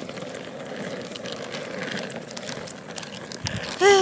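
Steady outdoor background noise with faint ticks and a dull thump, then near the end a short, loud cry from a person's voice, falling in pitch.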